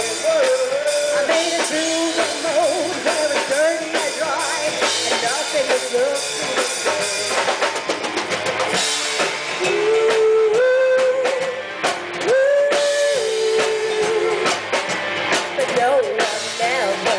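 Live rock band playing loud, recorded from the crowd: drum kit and electric guitar under a melody of long held notes that step up and down in pitch in the second half.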